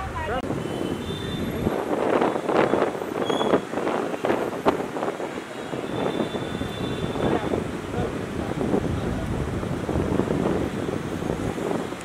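Outdoor street ambience: wind buffeting the handheld camera's microphone over traffic and indistinct voices, with a single sharp knock about five seconds in.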